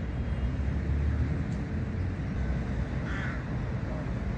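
Outdoor city ambience: a steady low rumble of road traffic, with a single short bird call about three seconds in.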